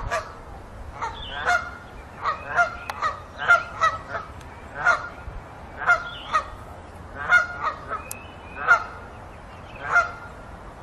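Geese honking over and over in short, irregularly spaced calls, about one to two a second, with a faint low rumble underneath.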